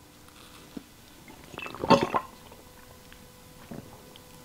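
A person gulping a drink from a large glass, with a loud burst of swallowing about halfway through and a few faint clicks around it.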